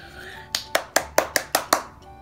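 A quick, even run of about eight sharp clicks, about five a second, each with a short ring after it.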